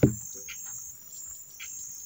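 A single sharp rifle shot right at the start that dies away within a fraction of a second, followed by crickets chirping in short repeated pulses.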